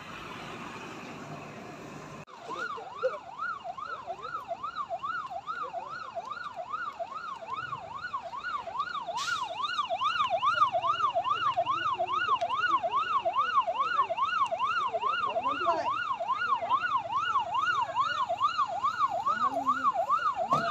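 Fire engine siren sounding a fast rising-and-falling wail, about two sweeps a second, starting about two seconds in and growing steadily louder.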